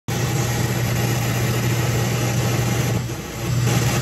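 Vintage Fisher 432 stereo receiver playing steady radio static over a low hum through its speaker, dipping briefly near the end as the tuning is turned.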